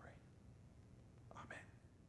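Near silence: a man's voice speaks one faint, soft word about a second and a half in, closing a spoken prayer, over a low steady room hum.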